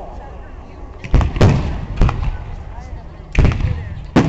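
Aerial fireworks bursting: a string of sharp bangs, two close together about a second in, another at two seconds and a double bang near the end, each dying away slowly.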